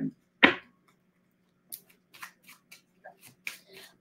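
Tarot cards being shuffled by hand: a string of light, irregular clicks and snaps from about two seconds in, after one short louder sound about half a second in, over a faint steady hum.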